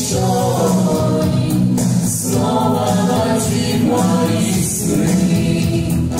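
Mixed vocal ensemble of women and men singing together in harmony, part of a rock medley, with steady low notes beneath.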